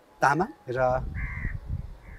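A man speaking, with a crow cawing once in the background about a second in, a harsh half-second call.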